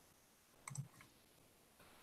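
Near silence, with one brief, faint click about two-thirds of a second in.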